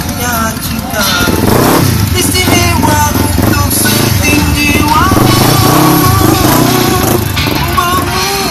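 Large cruiser motorcycle engines running and revving close by, getting louder about a second and a half in, over amplified music with a singer's voice.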